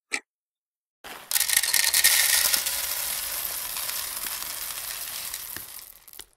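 A single watch tick, then from about a second in a dense rattle of coffee beans pouring into a wooden bowl, loudest early and slowly fading toward the end.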